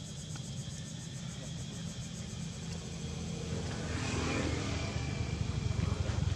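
A motor vehicle passing, its sound swelling up from about halfway through over a steady low rumble.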